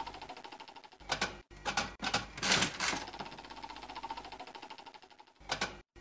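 Slot-machine reel sound effect: fast, even ratchet-like ticking as the reels spin, fading out and ending in a few sharp clunks as the reels stop. The spinning ticks then start again and end in another set of clunks near the end.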